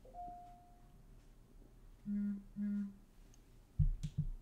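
A person humming two short closed-mouth notes at a steady pitch, like an 'mm-hm', about two seconds in. A faint tone fades out in the first second, and a brief low thump comes near the end.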